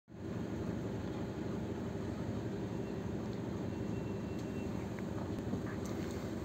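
Coach bus's diesel engine idling, heard inside the passenger cabin as a steady low hum.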